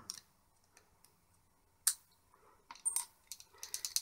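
Light metallic clicks as the knurled metal tip cap of a 12 V cigarette-lighter plug is unscrewed and the cap and a washer are set down on a cutting mat: one sharp click about two seconds in, then a quick run of small clicks near the end.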